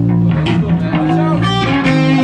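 Amplified electric guitars playing loud, held notes that change every half second or so, with voices faintly under them.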